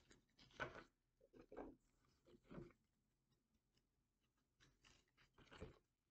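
Faint, intermittent rustles and scuffs of tarot card decks being picked up and handled on a wooden table, about half a dozen short bursts.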